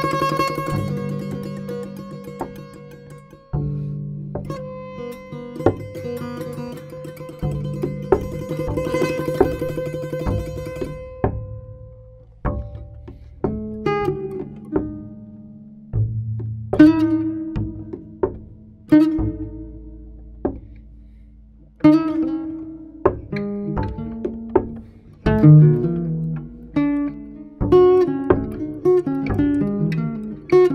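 Guitar and double bass duet: plucked guitar notes that ring and die away over low double bass notes, growing busier near the end.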